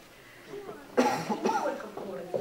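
A room pause, then a sudden loud cough about a second in, picked up close by a microphone and followed by brief speech.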